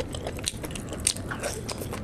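Close-miked chewing of a mouthful of luchi with curry: irregular small mouth clicks, with a sharper one about a second in.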